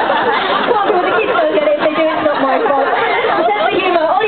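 Several people talking at once: overlapping crowd chatter.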